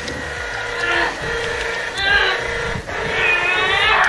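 A woman laughing and making straining sounds, over a steady hum.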